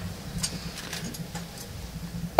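Low room noise in a large hall: a steady low hum with a few faint clicks and knocks scattered through it.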